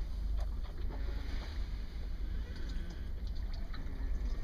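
A steady low rumble, with faint scattered clicks and rustles that come a little more often in the second half, as a person shifts about under a boat's canvas cover.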